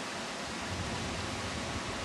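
Steady rushing of sea surf breaking on a rocky volcanic shore.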